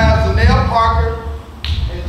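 Voices, with a sharp snap-like click about a second and a half in.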